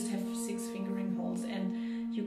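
Bass Renaissance flutes holding long, steady low tones together, with breathy air noise rising and falling above them.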